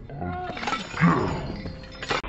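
A person's laugh warped by audio effects, its pitch gliding up and down, loudest about a second in.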